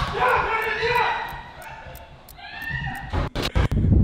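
Voices from the played video, then a quick run of four or five sharp thumps about three seconds in.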